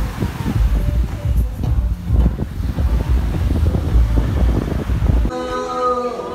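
Wind buffeting the microphone in a loud, gusty rumble, with sea surf washing on the beach behind it. About five seconds in it cuts off abruptly and music begins.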